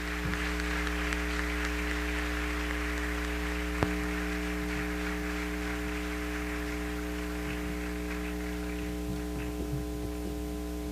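Steady electrical mains hum on the lecture-hall sound system, with the audience's applause dying away beneath it and a single knock about four seconds in.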